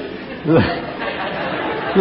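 A congregation laughing: a steady wash of laughter from many people, with one short voiced syllable from the preacher about half a second in.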